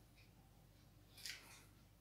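Near silence: room tone, with one brief faint scrape or rustle a little past the middle.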